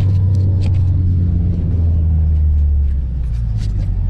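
Engine of a John Deere vehicle running steadily under way, a low drone heard from inside the cab, dipping slightly in pitch partway through, with a few light rattles.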